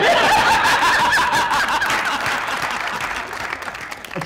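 Studio audience laughing, with some clapping mixed in, dying away gradually.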